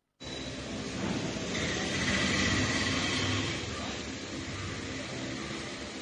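Heavy tipper lorry passing on the road, a rumbling vehicle noise that swells to its loudest around the middle and then eases off. It comes through the thin, band-limited sound of a CCTV recording.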